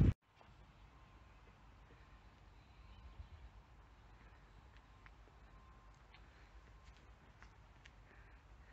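Near silence: faint outdoor background hiss with a few faint clicks in the second half.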